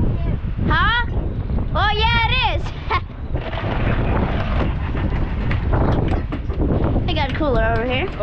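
Wind buffeting the microphone on an open boat deck, gusting over a low rumble, with three short raised voice-like calls at about one, two and seven seconds in.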